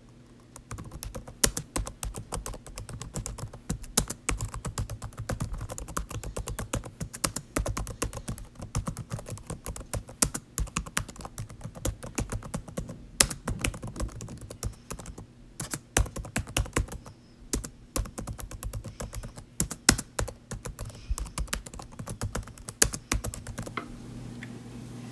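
Fast, irregular typing on a keyboard: a dense run of key clicks with a couple of brief pauses partway through.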